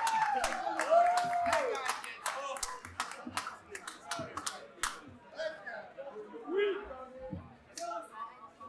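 Small audience clapping with a couple of whoops after a song; the applause thins out about five seconds in, leaving scattered voices.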